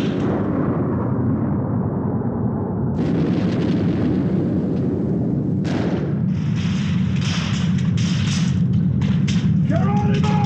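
Sound-effect explosion of a destroyed spaceship: a continuous deep rumble, renewed with fresh crackling blasts about three seconds in and again near six seconds.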